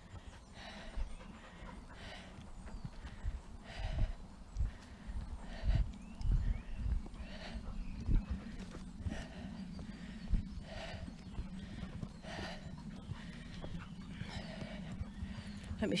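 A person breathing hard, out of breath from climbing a steep path, with a breath about once a second. A few low thuds of footsteps on soft ground come in the middle.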